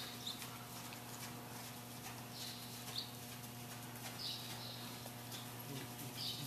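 Faint hoofbeats of a horse walking on soft arena footing, over a steady electrical hum. A few short high chirps come through about halfway in and again later.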